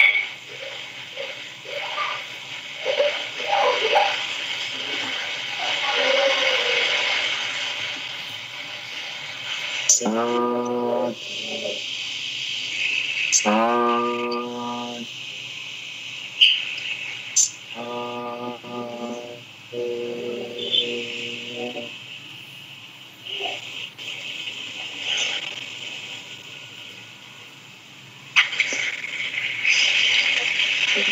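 Slow chanting by a single voice with several long, steady held notes of about a second or two each, over a constant hiss.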